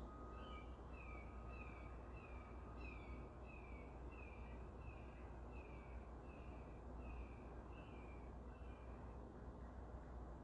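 Faint bird call repeated about fifteen times, a little under twice a second, each short note dropping slightly in pitch, stopping near the end; a low steady hum runs underneath.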